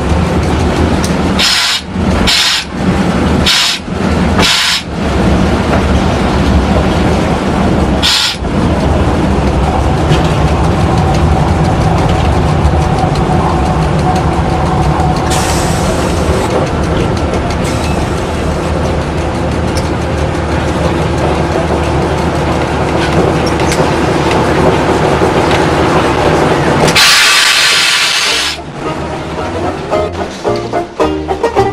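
Train running slowly, heard from the front of the train: a steady rumble and rattle. A few short breaks come in the first five seconds, and a loud hiss lasts about a second and a half near the end.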